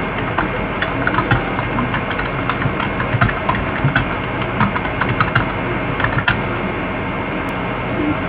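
Steady low hum and hiss with a run of irregular light clicks and taps that stops about six seconds in.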